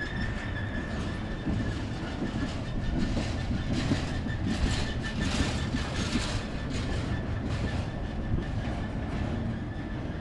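Freight train's intermodal flatcars rolling past at close range: a steady rumble of steel wheels on rail with repeated clicking over the rail joints, loudest in the middle. A thin, steady high-pitched squeal runs under it.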